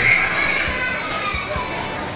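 Indoor crowd chatter with high children's voices, loudest at the very start and fading over the first second or so.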